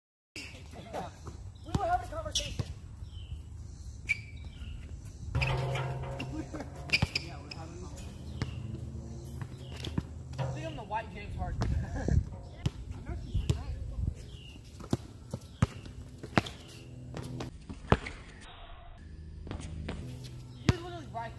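A basketball bouncing on an outdoor hard court in a pick-up game: irregular sharp bounces of dribbling and passing, with players' voices calling out now and then.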